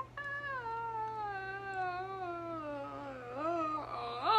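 A young woman's long, drawn-out wail, starting high and sliding slowly down in pitch for about three seconds. Near the end it breaks into a short rising swoop.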